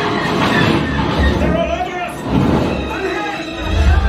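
Attraction show soundtrack of a space battle: dramatic music and sound effects, with deep rumbles about a second in and again near the end.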